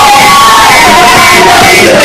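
A choir of many voices singing together in unison, holding long, slightly gliding notes.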